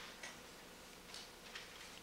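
Quiet courtroom room tone with a faint steady hum and a few soft, short clicks or rustles, roughly one a second.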